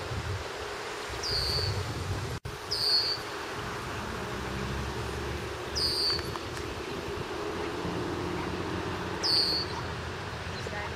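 A bird's short, high call, falling in pitch, repeated four times a few seconds apart, over a steady low outdoor rumble. The sound cuts out for an instant about two and a half seconds in.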